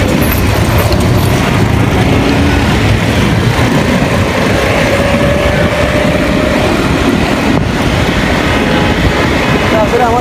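Steady road-traffic noise from motorcycles and auto-rickshaws, heard from a moving bicycle, with wind on the microphone. A faint held tone sounds for a couple of seconds in the middle.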